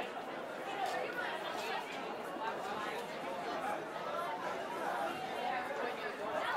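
Indistinct chatter of several people talking at once, fairly quiet and steady, with no single voice standing out.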